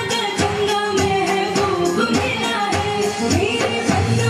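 South Asian pop song with singing over a steady beat.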